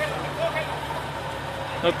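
Jeep Wrangler Rubicon's engine running steadily at low revs as it crawls over a tree root, with a man shouting just at the end.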